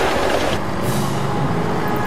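Cartoon sound effect of a big bus on oversized off-road wheels: a heavy engine rumble under a loud rushing noise.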